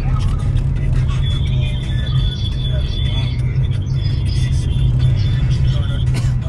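Steady low rumble of a car driving in city traffic, heard from inside the cabin, with faint voices in the background.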